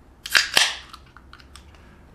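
Two sharp snapping sounds in quick succession, about a fifth of a second apart, followed by faint room tone with a few small clicks.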